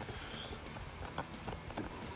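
Handling noise from a phone camera as it is moved and readjusted: a few light, scattered taps and rubs over a low steady hiss.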